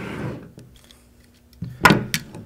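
Handling of the steel telescoping bolt of a vz. 26 submachine gun against its receiver: a soft rustle, then a short sharp metallic click near the end.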